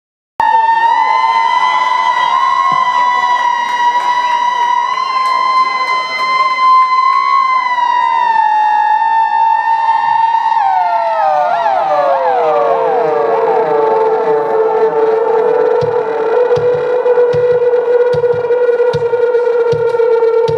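Live band's instrumental intro: a sustained, siren-like electronic tone holds steady, then slides down through overlapping falling glides to a lower held note. A low, regular drum thump comes in about three-quarters of the way through.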